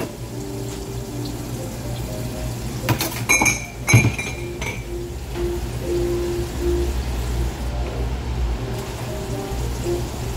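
Running water from a sink spray faucet splashing over ceramic mugs as they are rinsed, with a few sharp clinks of crockery about three to four seconds in. Soft background music plays throughout.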